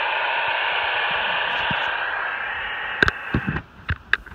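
Handheld two-way radio's speaker giving a loud burst of static hiss as a transmission comes in with no voice, cutting off suddenly after about three and a half seconds, with a few sharp clicks near the end.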